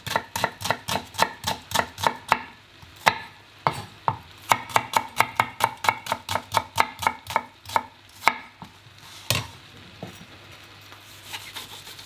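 A chef's knife chopping shallots on a plastic cutting board: a quick, even run of sharp taps about three a second, finely dicing them into brunoise. The taps stop about nine and a half seconds in.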